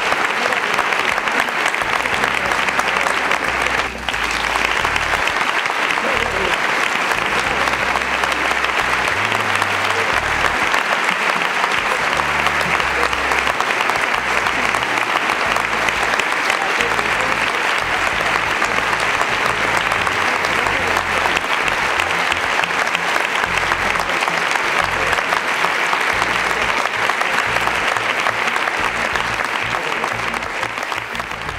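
Audience applauding, a long, steady round of clapping with one brief dip about four seconds in.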